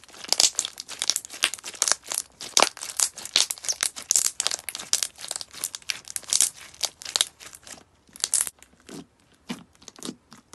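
Pink slime squeezed and kneaded by hand, giving dense, rapid crackling and crinkling pops. The crackle thins out about eight seconds in, leaving a few sparser, duller pops near the end.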